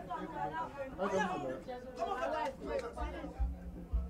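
Indistinct chatter of several people talking at once, with a few low thumps near the end.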